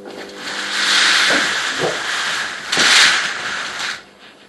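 A loud hiss that swells twice, about a second in and again near three seconds, then cuts off just before the end. Under it, a faint low hum stops about halfway through.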